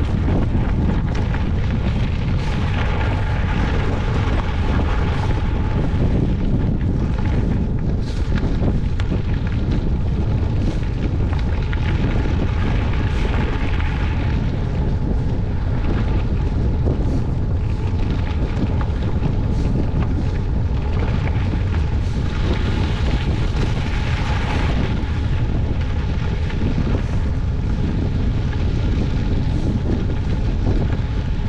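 Wind buffeting the microphone of a camera on a moving bicycle, a steady low roar, with the tyres crackling over loose gravel.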